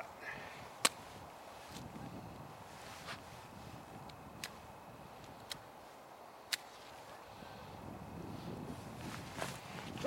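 Matches being struck to light tinder in a rocket stove: about five short, sharp strikes spread over several seconds, the loudest about a second in, over a faint breeze.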